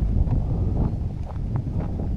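Wind noise on the camera microphone, with faint footsteps on a gravel path.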